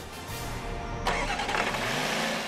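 2017 Land Rover Discovery's engine running as the SUV drives, a low rumble that turns abruptly brighter and hissier about a second in, with background music underneath.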